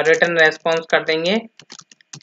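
Speech for the first second or so, then several quick computer keyboard key clicks near the end as typing starts in the code editor.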